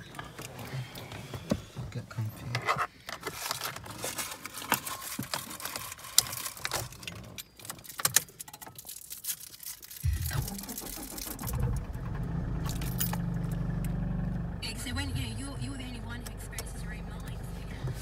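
Clicking and rustling in a car cabin, then about ten seconds in a Toyota Corolla's engine starts and runs a little higher for a few seconds before settling into a steady idle, heard from inside the car.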